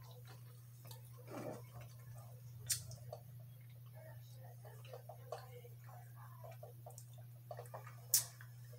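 Faint sips through a straw and the handling of a coffee tumbler, with one sharp click almost three seconds in, over a steady low hum.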